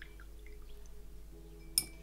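A paintbrush dipped and swished in a glass water jar: small drips and water sounds, then a sharp clink of the brush against the glass near the end.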